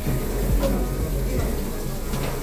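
Soft background music with steady held tones, under indistinct chatter of diners in a busy restaurant.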